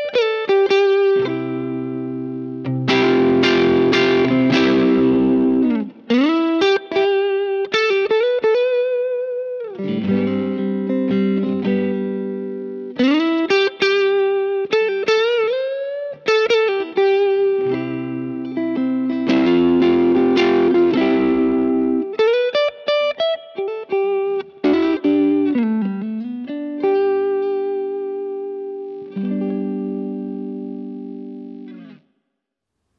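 Squier Classic Vibe '60s Telecaster played through a Boss BD-2 Blues Driver overdrive pedal: overdriven electric guitar alternating single-note lines with bent notes and two spells of strummed chords.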